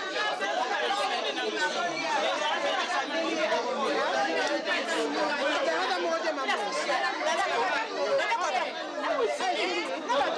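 Many people talking at once in a crowded room: a continuous babble of overlapping voices with no single speaker standing out.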